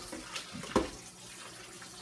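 Kitchen tap running onto chitterlings in a metal colander as they are rinsed, a steady splashing. Two short knocks land about half a second apart, just under a second in.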